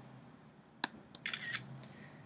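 The Mac's camera-shutter screenshot sound effect, played as a Shift-Command-4 area capture is taken. A single sharp click comes just under a second in, then about half a second later the short shutter sound.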